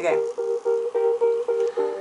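A plucked string instrument playing one chord over and over in a quick, even rhythm, about six strokes a second, as the accompaniment comes in ahead of the singing.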